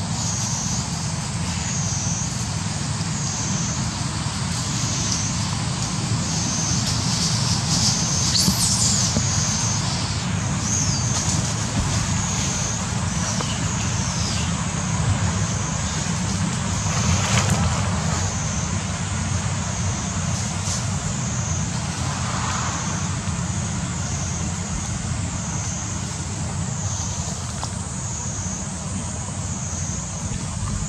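Outdoor forest ambience: a steady low rumble under a high, insect-like buzz that pulses regularly about once a second, with a few faint brief sounds over it.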